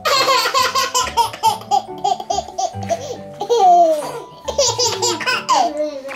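A toddler belly-laughing in quick, repeated bursts that step down in pitch. A long falling squeal comes about halfway through, and a second run of giggles follows near the end. Soft background music plays underneath.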